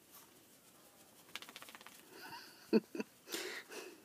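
A quick run of soft ticking sounds from a small dog moving in the snow, about a second in, then a person laughing twice near the end.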